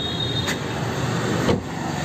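Steady road-traffic noise, broken about a second and a half in by one heavy thump of a car door being shut.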